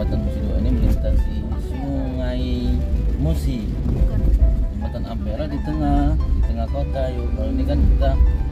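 Steady low road rumble of a car driving over a wet bridge, heard from inside the cabin, with music and a singing or talking voice over it.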